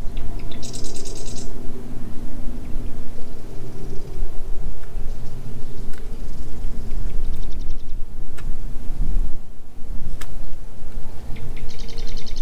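A small marsh bird trilling in short, rapid bursts three times, over a steady low hum and rumble, with a few light clicks.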